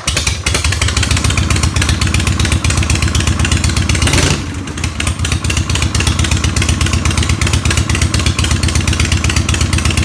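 Harley-Davidson Shovelhead air-cooled V-twin motorcycle engine idling with a steady pulsing beat, just after starting.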